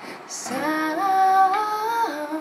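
A young woman's voice singing one drawn-out phrase. It starts about half a second in, steps up in pitch twice and is held to the end.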